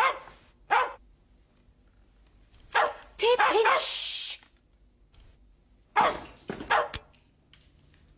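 A dog barking in short bursts: a single bark, then a longer run of barks in the middle, then a couple more.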